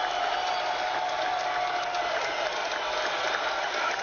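Crowd applause played as a recorded sound effect, dense and steady at an even level, then cutting off abruptly at the end.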